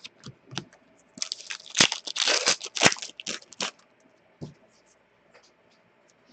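Hockey trading cards being handled and sorted by hand: a few light clicks, then about a second in a crinkling, scraping rustle of card and wrapper that lasts some two and a half seconds.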